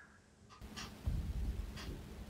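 Bristle brush working oil paint onto a canvas, with a few short scratchy strokes starting about half a second in. A low rumble of handling noise runs under the strokes.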